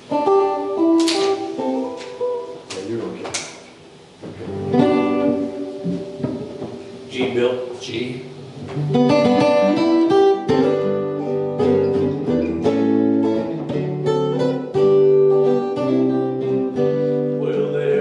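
Acoustic and electric guitars playing together. The first half is sparse picked notes and a few strums; from about nine seconds in the band plays steadily with a low bass line underneath.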